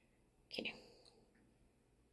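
Near silence broken once, about half a second in, by a brief, soft sound of a person's voice.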